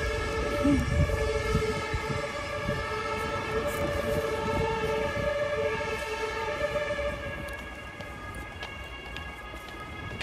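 Street noise with a steady drone of several held high tones running under it; the low rumble eases after about seven seconds.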